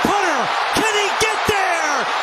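Excited play-by-play announcer shouting the call of a punt return in high-pitched, drawn-out bursts, over a steady roar of stadium crowd noise.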